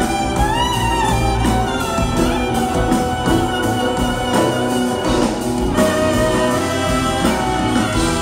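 Clarinet solo playing an ornamented melody with slides and bends between notes, over a live band with drums.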